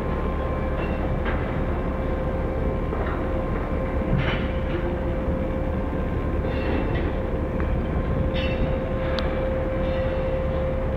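Container crane's boom hoist machinery running: a steady rumble with a constant whine, while the boom is lowered on its wire ropes. A few faint short rattles come and go over it.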